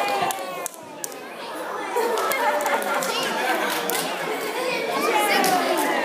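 Children and adults chattering, several voices overlapping with no clear words.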